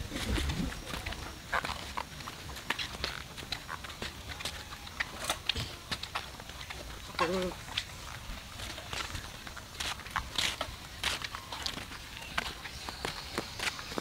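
Footsteps on a dirt path scattered with dry leaves, walking at a steady pace.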